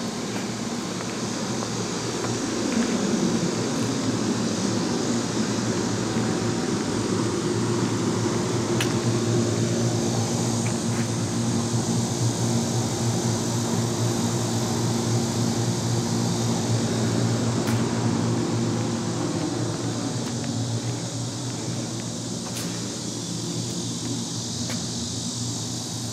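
Central air-conditioning outdoor unit running, its compressor giving a steady low hum under the rush of the condenser fan. It grows louder about two seconds in and eases off again near the end.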